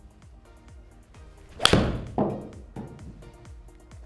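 A Titleist T300 game-improvement iron striking a golf ball off a hitting mat: one sharp, loud, clicky strike about a second and a half in, followed about half a second later by a duller thud as the ball hits the simulator screen. Background music runs underneath.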